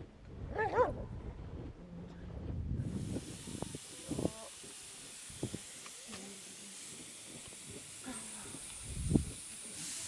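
A dog gives one short call about a second in. From about three seconds a steady hiss of steam from cooking vessels over an open fire runs on, with a few short metal clinks and knocks.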